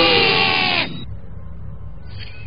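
A cartoon character's long drawn-out yell, falling slightly in pitch, that cuts off about a second in and leaves a low rumble underneath.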